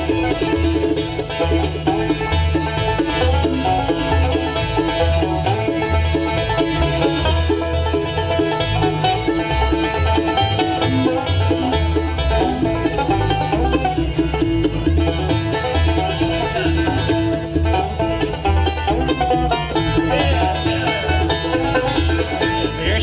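Live bluegrass band playing an instrumental break between sung verses: five-string banjo, fiddle, acoustic guitar and mandolin over an upright bass keeping a steady beat.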